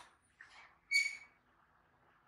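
Baby macaque giving a short, high-pitched squeak about a second in, after a fainter brief call.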